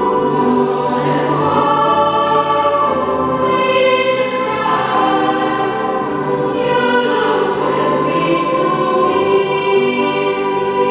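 Treble choir of girls' and young women's voices singing in parts, holding long notes that move together to new chords every second or two.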